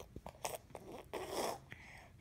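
Baby chewing and crunching hard pieces of brownie brittle. There is a short crunch about half a second in, then a longer rasping one.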